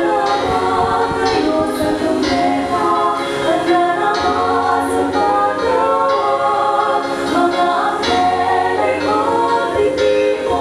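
Three women singing together in harmony into microphones, a slow sung song with several voice parts at once.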